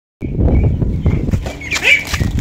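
Quick pattering footsteps on wet concrete as ducks and a child run, over a heavy low rumble. A brief higher-pitched call comes near the end.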